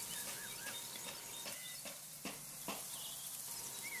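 Quiet outdoor ambience with a few faint bird chirps, and soft clicks and rustles from gloved hands twisting bare wire ends together and pushing them into a cable connector; the clicks come in the second half.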